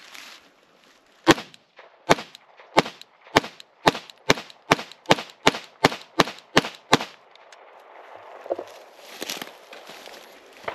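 Semi-automatic pistol firing a string of about thirteen shots. The first few come about three quarters of a second apart, then the pace quickens to about two and a half shots a second, and the string stops about two-thirds of the way through.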